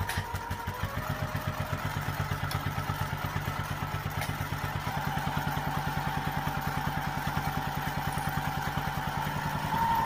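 Electric sewing machine stitching down the edge of a cotton fabric strap: a fast, steady rhythm of needle strokes with a motor whine, which grows louder near the end.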